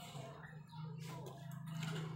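Eating sounds at close range: a few sharp clicks of a metal spoon and fork against a china plate while rice and barbecued chicken are chewed, over a steady low hum.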